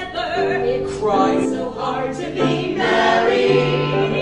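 Music with a choir singing long held notes.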